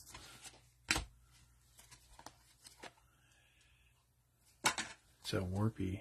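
A stack of trading cards being handled and sorted: one sharp click about a second in, then a few lighter clicks and faint rustling.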